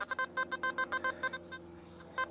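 XP metal detector giving a quick run of short target beeps, about five a second and jumping between a lower and a higher tone, as the coil passes over a patch of several buried targets. The beeps stop about three-quarters of the way in, leaving a faint steady hum.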